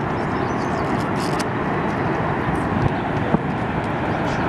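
Steady rushing roar of Niagara's American Falls, with a low, uneven rumble beneath it.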